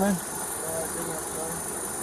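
A car engine idling with a steady low hum, under a faint muffled voice about a second in.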